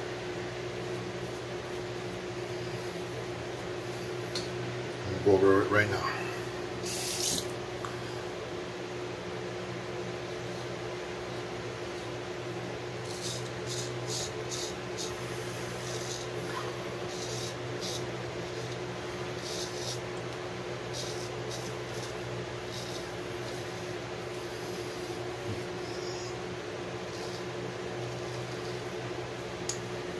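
Straight razor blade scraping across lathered stubble in a run of short strokes near the middle, over the steady hum of a room fan.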